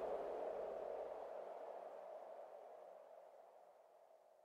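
The end of an electronic music track: a lingering synth tone fading steadily away toward silence.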